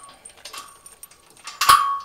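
Metal-on-metal clanks from the fittings of a galvanised steel boat trailer drawbar being handled: a light clink about half a second in, then a loud clank near the end that rings on briefly as one clear tone.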